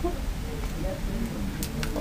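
Plastic film wrapper being handled and pulled at on a small cardboard box, with a couple of faint crackles near the end.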